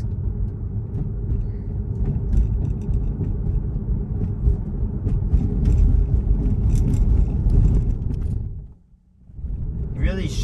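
Steady low road and tyre rumble heard inside the cabin of a Tesla electric car driving at low speed, with faint light clicks over it. The sound drops away briefly about nine seconds in, then returns.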